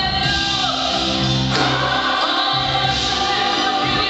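Gospel praise and worship singing: a group of singers on microphones over instrumental accompaniment, loud and continuous.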